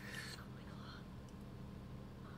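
A faint whispered voice in the first second, over a low steady hum.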